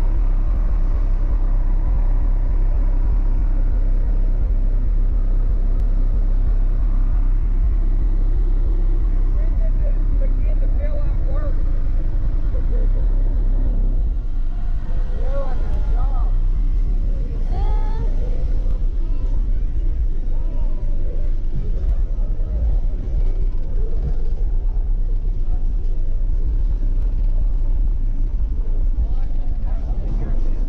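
Car audio subwoofer system, four Skar ZVX 15-inch subwoofers in a sixth-order enclosure, playing heavy bass at a steady high level. Voices can be heard faintly over the bass.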